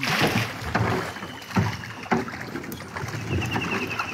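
A small rowboat being rowed through floodwater: a splash of water at the start, then a few separate knocks of the oars or paddle against the boat between strokes.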